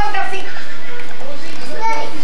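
Children's voices chattering and playing.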